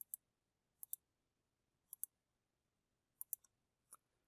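Faint computer mouse clicks, four of them about a second apart. Each is a quick press-and-release pair, made while selecting contour edges in CAD software.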